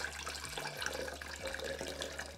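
Sugary citrus syrup poured from a glass jar through a fine mesh sieve, trickling steadily into a glass jug.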